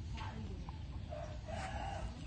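A chicken calling in the background, one held call starting about a second in, over a steady low rumble of wind or handling noise on the microphone.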